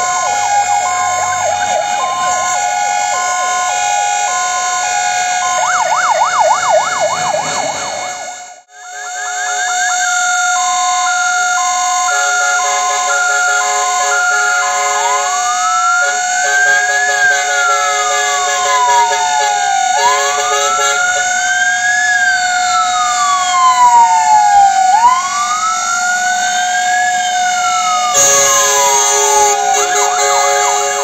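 Several fire-engine sirens sounding at once: a fast yelp and a two-tone hi-lo alternating about once a second, joined from about halfway by a slow wail that rises and falls in sweeps of about five seconds. The sound cuts out sharply for a moment about nine seconds in.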